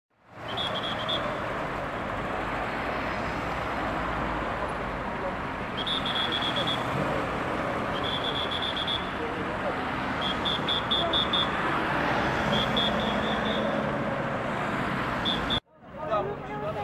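Steady city street traffic noise from passing cars, with faint voices and clusters of short high-pitched chirps every couple of seconds. It cuts off suddenly near the end.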